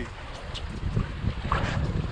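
Wind rumbling on the microphone, with water sloshing and splashing against the side of the boat where a sailfish is held alongside.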